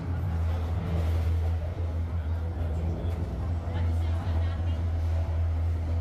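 Indoor dark-ride boat ambience: a steady low hum under indistinct voices and the show's soundtrack.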